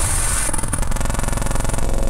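Opening of an industrial hardcore (gabber) electronic track: a dense buzzing texture of very rapid, evenly spaced pulses over a low drone, with a high hiss fading away in the first half second.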